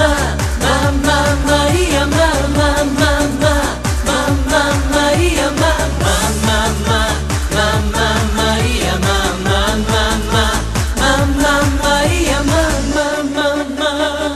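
Upbeat Portuguese dance-pop song: a melodic lead line over a steady electronic beat and bass. About a second before the end the beat and bass drop out, leaving a thinner electronic texture.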